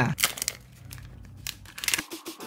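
Clear protective plastic film being peeled off a new smartphone, crinkling in irregular crackles, with a cluster near the start and another near the end.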